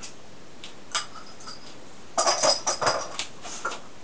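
Clear plastic cupping cups and equipment being handled: a sharp click about a second in, then a quick run of hard clinks and clatter that is loudest just after the two-second mark and tails off near the end.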